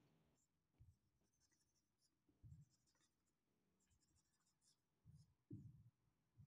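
Near silence with faint strokes of a marker pen on a whiteboard, as resistor symbols are drawn, and a few soft low bumps.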